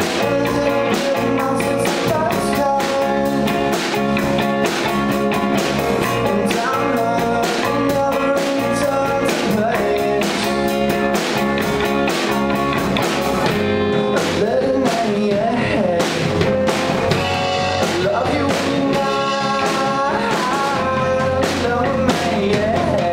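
Rock band playing live, guitar over a drum kit keeping a steady beat.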